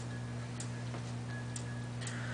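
Room tone: a steady low hum with a few faint ticks.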